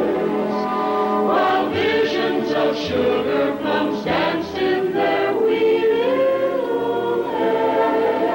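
A choir singing held notes as soundtrack music, with one line rising in pitch about six seconds in.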